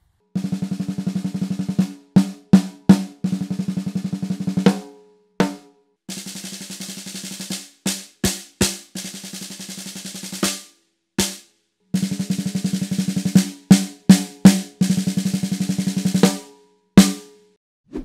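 A 14-inch snare drum struck with sticks: the same pattern of rapid, even strokes with louder accented hits is played three times, with short pauses between. It is heard through the top dynamic mic (beyerdynamic M 201) alone, through the bottom small-diaphragm condenser (TG D58) alone, and through both blended. A single last hit comes near the end.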